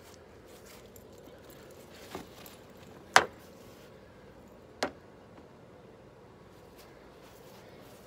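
Three short, sharp knocks spread over a couple of seconds, the middle one much the loudest, over a faint steady background hiss.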